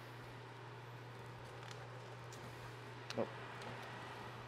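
Quiet room tone: a low steady hum with a few faint clicks, and a brief spoken "oh" near the end.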